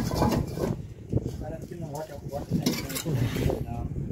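Voices talking at a distance, with a few sharp knocks from ceramic bricks being handled and laid in mortar.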